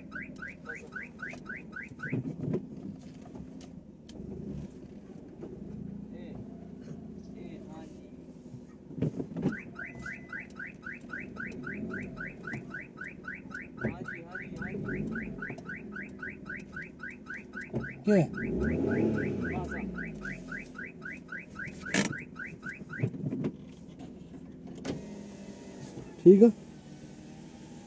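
Repeating electronic warning chirp from a vehicle: a quick run of short rising beeps that stops about two seconds in, then starts again at around nine seconds and runs until near the end. Underneath are a low engine hum and a few knocks, the loudest a rumble a little past the halfway point.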